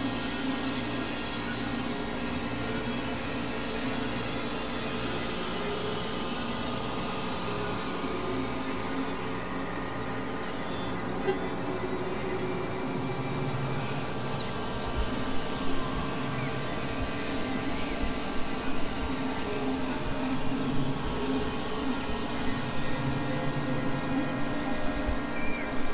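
Experimental synthesizer drone music: a dense, steady wash of many sustained tones over noise. Sharp crackling spikes come in from about halfway through.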